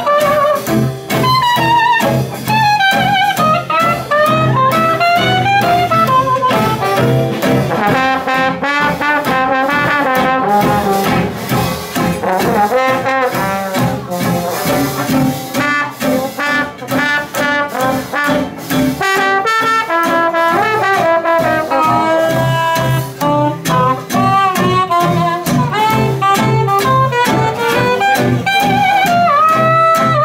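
A traditional jazz band playing: soprano saxophone and trombone carrying the melody over guitar and string bass rhythm, the trombone coming in partway through.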